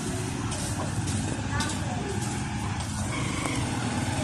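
A steady low hum over a constant outdoor background noise, with no sudden sounds.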